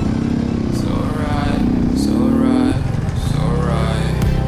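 Two-stroke enduro motorcycle engine running on the throttle, its pitch climbing between about one and three seconds in, then dropping to a lower, steadier note.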